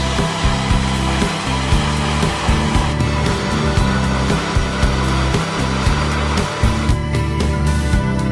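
Waterfall rushing steadily under background music with a plucked, rhythmic beat; the rushing stops about seven seconds in and the music carries on.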